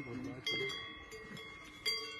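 A cowbell hung on a cow's collar clanking as the cow moves its head. Three strikes: one at the start, one about half a second in and one near the end, each ringing on with a steady metallic tone.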